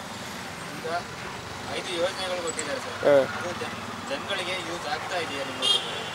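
Steady street traffic noise, with faint voices talking in short stretches in the background.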